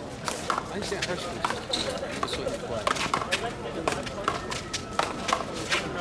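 A one-wall handball rally: sharp, irregularly spaced smacks as the small rubber ball is struck by gloved hands and rebounds off the concrete wall and court, over faint background voices.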